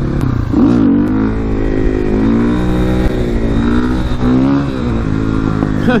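KTM 450 supermoto's single-cylinder four-stroke engine under way, revving up and easing off several times so its pitch rises and falls, over steady wind rush.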